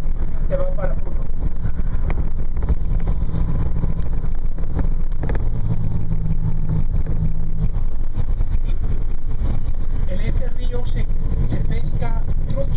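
Engine and road noise heard from inside a moving vehicle: a steady low drone.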